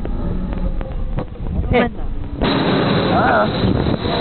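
Wind buffeting the microphone of a camera riding a fast-spinning amusement ride, a heavy rumbling rush that grows broader about halfway through, with short rider shouts or squeals over it.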